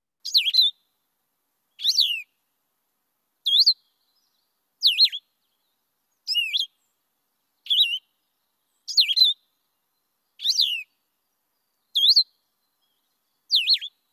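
Blue-headed vireo singing: ten short, clear whistled phrases, each slurring up and down and lasting under half a second, evenly spaced about a second and a half apart. The slow, unhurried cadence is what marks it out from the other vireos.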